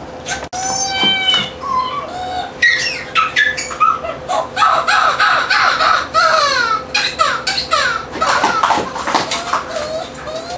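High-pitched squeaky voices squealing in many short rising and falling calls, sparse at first and busier from about four seconds in, over a faint steady hum.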